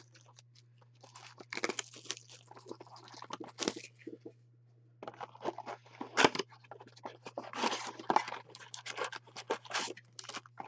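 Plastic shrink-wrap being torn and crinkled off a Panini Prizm trading-card blaster box, then the box's cardboard flap being pulled open: irregular crackles and scrapes, with a short pause about four seconds in.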